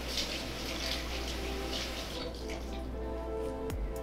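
Soft background music with held notes, over faint hissy puffs of breath blown through a drinking straw into a soapy-water film to grow a bubble dome.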